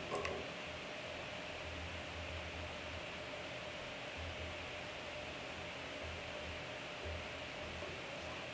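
Steady hiss of room noise with a faint hum, and a sharp click right at the start as a pencil is set down on the table.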